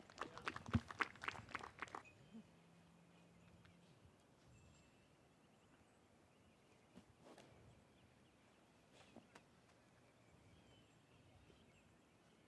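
Near silence: faint outdoor ambience, with a cluster of soft clicks in the first two seconds and a faint low hum shortly after.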